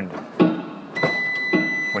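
A single steady, high-pitched electronic beep starts about a second in and holds level for about a second.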